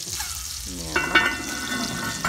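Steady sizzling of food cooking on the stove. About a second in come a couple of sharp clinks from the enamelled cast-iron lid of a Le Creuset round French oven as it meets the pot's rim, with a brief ringing after.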